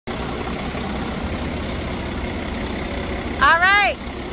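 Telehandler's diesel engine running steadily as it lifts a stack of hay bales. A voice is heard briefly near the end.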